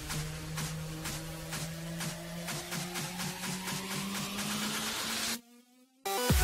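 Background electronic dance music with a steady beat and a sweep that rises in pitch as it builds, then cuts out almost to silence near the end.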